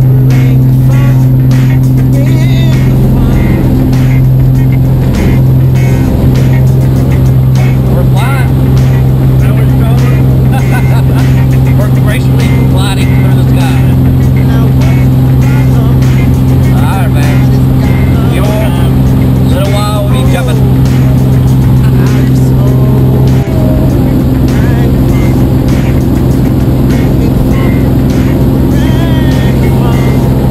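Engine and propeller of a light single-engine plane running at full power through the takeoff roll and climb, a loud steady drone heard inside the cabin.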